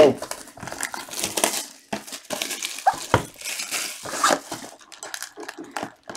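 Clear plastic shrink wrap being torn and pulled off a sealed trading-card box by gloved hands, crinkling irregularly throughout.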